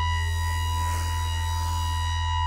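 1978 Serge Paperface modular synthesizer playing a patch with added reverb: a steady low drone under a sustained high tone near 1 kHz with its overtones, and a faint hiss that swells up about halfway through.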